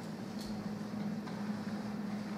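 Room tone: a steady low hum with an even hiss over it, and one faint tick about half a second in.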